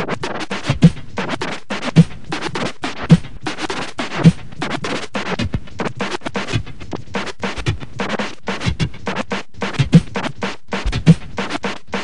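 Turntable scratching through M-Audio Torq timecode vinyl: a sample is cut rapidly back and forth by hand on the record and chopped with the crossfader, over a steady low thump about once a second.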